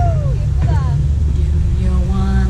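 Heavy steady low rumble with a person's voice over it, rising and falling in pitch: an arching tone right at the start, quick falling glides about half a second in, then held tones near the end.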